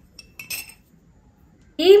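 A steel spoon clinking lightly against a ceramic bowl, a few short ringing clinks in the first second. A woman starts speaking near the end.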